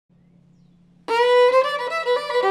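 Solo fiddle (a 2008 Lance Scott violin) starting a fast old-time tune: about a second of faint hum, then a sudden loud held note and the first quick notes. The fiddle has an open seam, which the player says gives it a hefty buzz.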